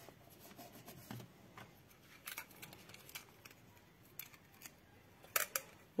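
Faint, scattered crackles and clicks of sticky tape and cardstock being handled: tape pressed onto a cardstock fan, then pulled from a tape dispenser, with a few sharper snaps near the end.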